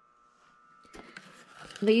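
Quiet room tone with a faint steady hum, then soft rustling and a few light clicks about a second in. A woman starts speaking near the end.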